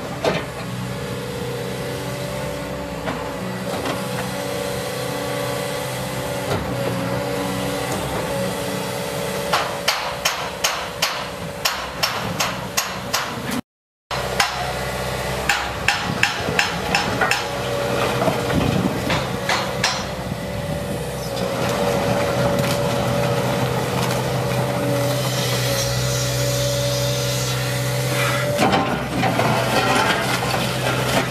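JCB tracked excavator's diesel engine running steadily while its demolition grab works through brick and concrete rubble. Two runs of sharp knocks and clatters, one around the middle and one soon after, come from the grab biting and dropping masonry.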